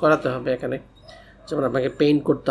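A man speaking, with a short pause of about half a second in the middle.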